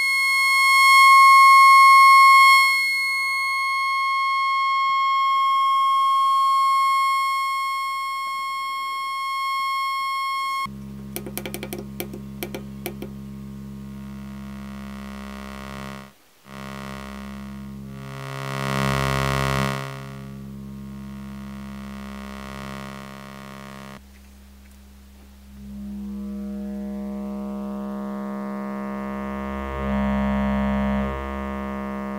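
Synthesizer tones from an oscillator's saw wave run through a Lockhart wavefolder module, the folding adding overtones. A steady high buzzing tone gives way about a third in to a lower, buzzier tone with a few clicks, cuts out briefly about halfway, and near the end its overtones sweep upward as the folding is turned up.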